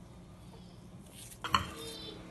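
Wooden spoon in a steel saucepan of soup: faint stirring, then a single sharp knock about one and a half seconds in.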